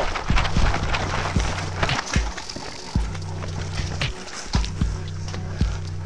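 Running footsteps through grass with gear knocking, over background music with a steady bass line that drops out and comes back in blocks.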